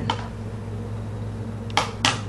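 Plastic eyeshadow palette being handled: a sharp click near the end, over a steady low electrical hum.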